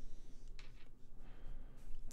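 Quiet room tone with faint hand handling of the phone and headset, and one light click about half a second in.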